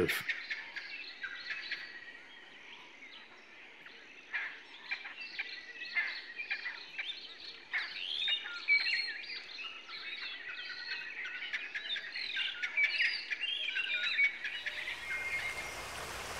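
Several birds calling, a chorus of short chirps, whistles and trills that grows busier a few seconds in. Near the end a steady hiss fades in.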